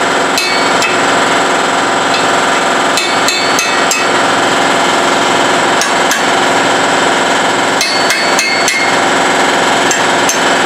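Hammer blows on a steel chisel held against a steel plate, struck irregularly in small clusters. A steady, loud machine hum runs underneath.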